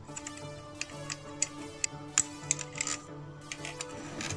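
Background music over a series of irregular sharp metallic clicks and taps: the presser foot being unscrewed and taken off a sewing machine's presser bar with a flat screwdriver, the loudest clicks coming around the middle.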